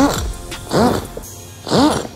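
A man laughing in three drawn-out bursts about a second apart, over background music.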